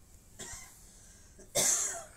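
A person's short cough about one and a half seconds in, after a faint breath.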